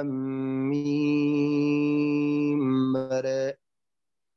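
A man intoning the Quranic opening letters "alif lām rā" in tajwīd recitation style. He holds a long drawn vowel at one steady pitch for about two seconds, then ends on "rā" pronounced with taqlīl (midway between "ra" and "re"), as in Warsh's reading. The voice stops sharply about three and a half seconds in.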